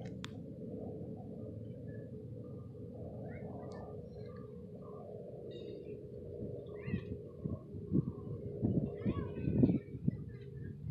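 Hands rustling through grass and loose soil to pick out a small ring, with scattered short high chirps in the background. Several louder bumps of handling noise come in the last few seconds.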